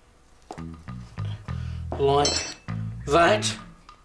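Background music with a plucked bass line, with wordless vocal noises and a short high clink about two seconds in.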